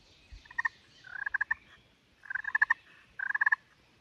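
Ceramic-over-glass turkey pot call in a walnut pot, worked with a striker: four short, soft trills of rapid notes, purrs imitating a turkey.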